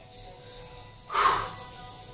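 Faint background music under a short, forceful exhale about a second in, the breath pushed out during an abdominal crunch.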